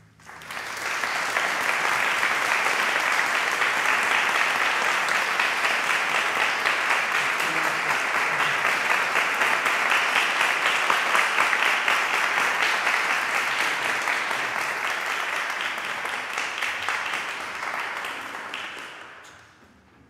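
Audience applauding in a concert hall: the clapping rises quickly just after the start, holds steady, then dies away near the end.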